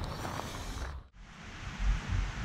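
Quiet outdoor background noise with low wind rumble on the microphone, broken by a brief near-silent dropout about a second in; the rumble grows louder near the end.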